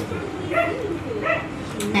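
Two short high-pitched cries from a small pet animal, a little under a second apart, with the house's talk pausing around them.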